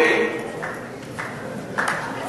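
A man's voice ending a phrase, then a short pause with three or four faint knocks about half a second apart.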